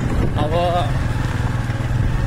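Motorcycle engine running steadily under way, heard from the pillion seat together with road and wind noise.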